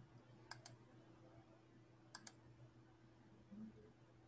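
Near silence broken by two faint double clicks, about half a second and two seconds in: computer clicks made while bringing up the next slide.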